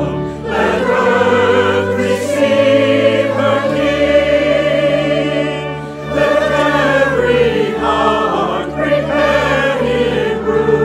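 A mixed virtual choir of men's, women's and children's voices singing together in held notes with vibrato, pausing briefly between phrases about six seconds in.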